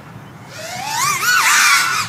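FPV racing quadcopter flying a fast lap on a 4S battery, its motors whining in pitch that wavers and climbs with the throttle. It grows louder as it comes closer and is loudest near the end.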